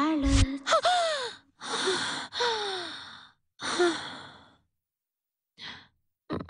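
A woman jolting awake with a sharp gasp over a short low thud, then four heavy, voiced, sighing breaths, each falling in pitch and each fainter than the last, and a faint breath near the end.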